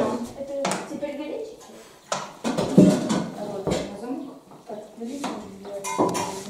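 Metal pots, dishes and mugs clinking and clattering as food and tea are served, with a few sharp clinks spaced about a second and a half apart, under indistinct voices.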